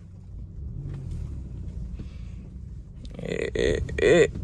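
Low, steady engine rumble of a Suzuki Swift idling, heard from inside the cabin. About three seconds in, a louder voice-like sound begins over it.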